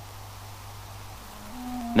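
Low steady hum and faint hiss of an old film soundtrack with no music. Near the end a soft held musical note comes in and steps up once in pitch as music starts again.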